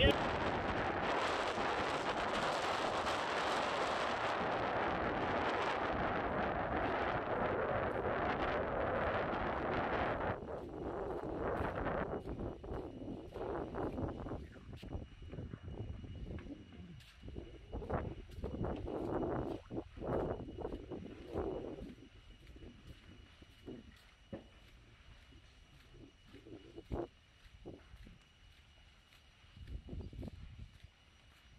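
Large fire burning through a building and trees: a steady noisy roar for about the first ten seconds. It drops away into quieter, irregular crackles and pops.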